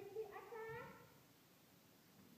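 A child's high voice, a drawn-out wordless cry in two stretches that ends about a second in, followed by near silence.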